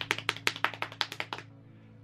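An improvised drum roll made by hand: rapid taps, about ten a second, that fade and stop about a second and a half in.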